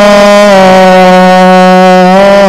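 A man chanting in melodic Arabic religious recitation, holding one long, steady note.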